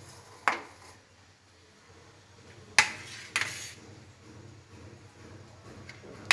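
Aluminium cake tin knocking against cookware as it is lifted out of a steel kadai and turned over: three sharp clanks, one about half a second in and two close together around three seconds in, the first of those the loudest.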